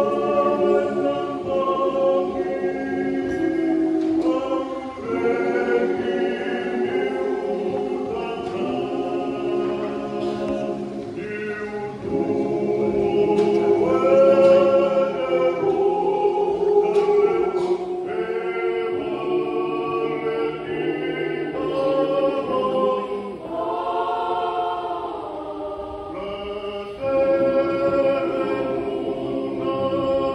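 Mixed church choir of men and women singing a hymn in several parts, phrase after phrase, loudest about halfway through.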